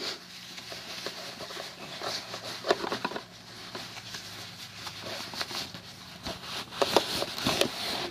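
Cloth gas mask bag rustling and scraping as a hand rummages inside it and handles the gas mask's corrugated rubber hose and metal filter, with irregular small knocks and clicks throughout.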